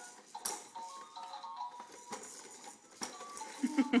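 Electronic tune playing from a Fisher-Price jumperoo's light-up activity panel, a simple melody of stepping beeps, with a few sharp clacks as the baby bounces.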